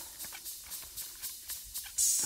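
Skate blades and pole tips ticking on lake ice in a rapid, faint series of about four clicks a second, over a light hiss.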